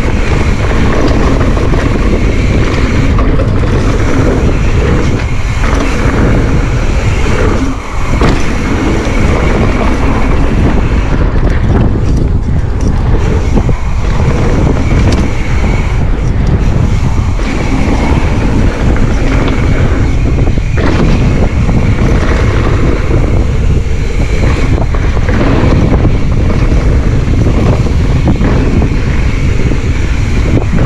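Wind rushing over a GoPro's microphone during a fast mountain-bike descent on a dirt trail, mixed with the rumble of knobby tyres on dirt and the bike's rattle, loud and steady. The noise briefly drops about eight seconds in.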